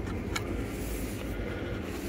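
Steady low rumble and hum of a cruise ship's interior: machinery and ventilation noise in a cabin corridor. One sharp click about a third of a second in.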